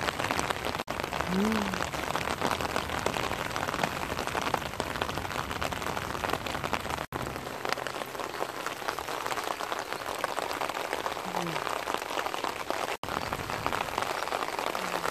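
Heavy rain falling on grass and wet concrete: a steady, dense patter. The sound cuts out for an instant three times, about a second in, halfway through and near the end.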